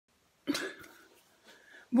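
A single short cough about half a second in, trailing off, then quiet breath before speech begins.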